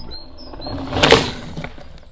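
Mountain bike passing on a dirt forest trail: a whoosh of tyres and air that swells to a peak about a second in and fades. Short high chirps at the start.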